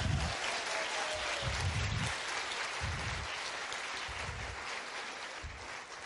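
Audience applauding, the clapping slowly dying down toward the end.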